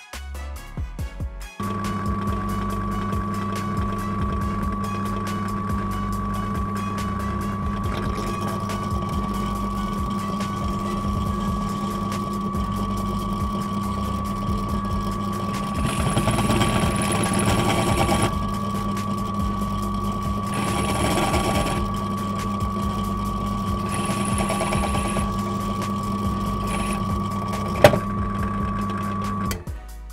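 Benchtop pillar drill motor running with a steady hum, starting about two seconds in and stopping just before the end. Three times in the second half, the 5 mm drill bit bites into the metal of a turntable tonearm pivot base with a brief grinding hiss as it drills out the seat for a replacement bearing. A single sharp click comes near the end.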